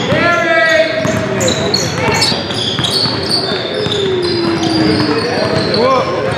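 Busy gym court: basketballs bouncing on a hardwood floor, with repeated short high squeaks of sneakers and players' voices calling out, one long call near the start.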